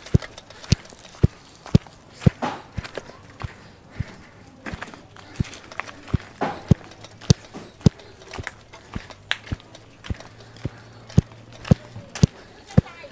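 Footsteps walking on a dirt path up a slope, about two steps a second, each a short sharp crunch.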